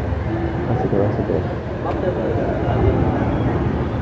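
Outdoor ambience: a steady low rumble with indistinct voices talking in the background.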